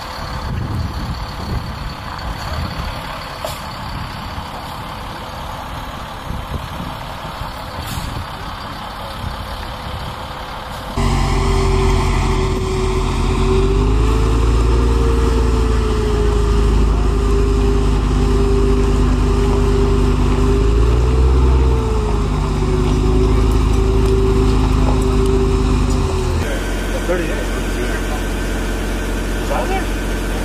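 Sgt Stout M-SHORAD eight-wheeled Stryker vehicle's engine running loud and steady, its pitch rising briefly twice. Before it, for about the first eleven seconds, a quieter uneven rumble; near the end a softer steady engine sound.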